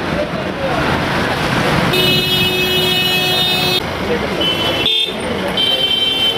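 Street noise with people talking, and a vehicle horn held steady for about two seconds in the middle. Shorter high-pitched beeps sound near the end.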